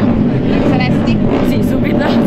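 A woman talking over a loud, steady background drone of engines.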